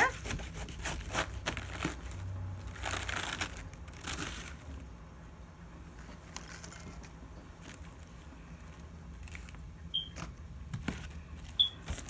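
Crisp lettuce leaves being broken apart and handled for cutting: crackling, rustling swishes in the first few seconds, then quieter handling with a few light clicks.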